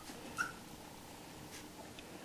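A dog's faint, short whimper about half a second in, with a light tap later on.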